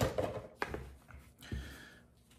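Soft handling sounds: a few light clicks and knocks as a camping spork is worked out of its packaging and picked up.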